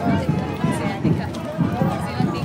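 Many people chattering and talking over one another, with low thumps about three a second underneath.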